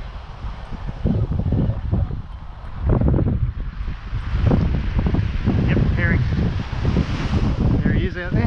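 Wind buffeting the microphone in uneven gusts, over waves washing onto a sand beach.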